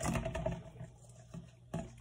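Seasoned salt being shaken from a shaker bottle onto a raw fish in a metal bowl: faint and uneven, with one light knock near the end.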